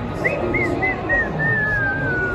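Whistling: four short arched notes, then one long note sliding slowly down in pitch, over steady crowd chatter in a large hall.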